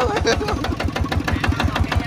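Kubota ZT140 single-cylinder direct-injection diesel engine idling with a steady, rapid knocking beat.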